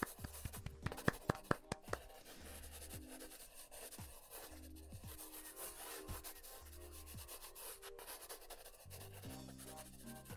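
A quick run of sharp taps from hands clapped together in the first two seconds, with rubbing after it. Quiet background music with a low bass note every couple of seconds.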